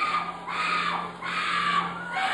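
Short, high-pitched screams from someone in the congregation, repeated about every half second, over a steady low electrical hum from the sound system.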